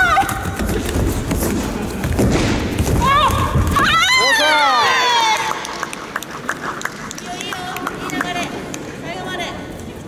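Karate kumite bout: feet thudding and scuffling on the competition mat, then loud shouts. The longest shout, about four seconds in, rises and then falls in pitch, as a fighter is taken down to the mat. Smaller calls follow near the end.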